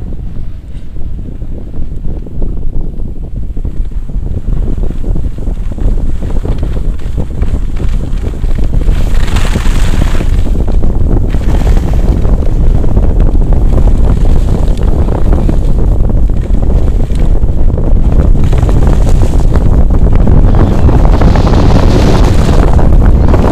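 Wind buffeting an action camera's microphone as a skier gathers speed downhill, rising in loudness over the first several seconds and then staying strong. The scrape of skis on packed snow surges twice, about nine seconds in and again near the end.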